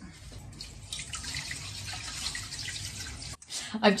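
Water running from a kitchen tap into a clear plastic plant pot as it is rinsed out: a steady splashing hiss that stops abruptly about three and a half seconds in, as the tap is shut off.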